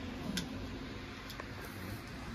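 Two faint clicks about a second apart over low room noise.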